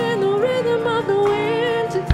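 Female vocalist singing a live worship song, her voice sliding and wavering between held notes over a sustained band accompaniment with electric guitar.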